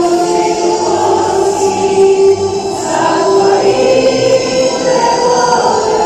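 A youth choir of boys and girls singing together, holding long sustained notes.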